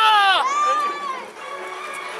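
A person's voice holding long, drawn-out notes, the first sliding down in pitch; it fades about a second in, leaving quieter background.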